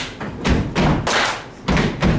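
A steady beat of deep thumps alternating with sharp claps, about two strokes a second, like people stomping and clapping a rhythm.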